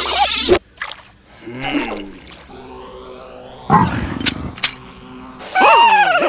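Cartoon sound effects: a busy whirling effect cuts off abruptly about half a second in. Quieter scattered effects follow, with a short noisy burst near the middle, and high, gliding children's cartoon voices squealing near the end.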